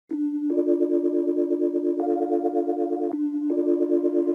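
Synthesizer chords held and pulsing rapidly in level, switching chord four times: the instrumental intro of an electronic pop track.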